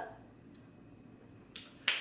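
Quiet room tone, then near the end a faint tick followed by one sharp click just before speech resumes.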